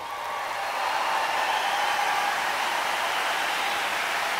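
A steady rushing noise with no tune or rhythm, swelling during the first second, then holding level.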